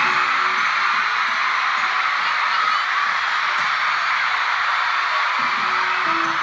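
Large arena concert crowd screaming and cheering in a dense, steady wall of high-pitched shrieks, with music faintly underneath. A low held note comes in near the end as the next song begins.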